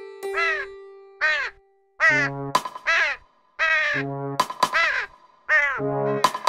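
A flock of crows cawing: about eight harsh caws, one after another, some overlapping.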